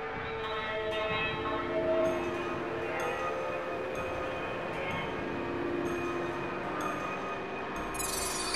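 Playback of an experimental electronic composition: many sustained tones held at once in a dense drone, with new notes entering every second or so.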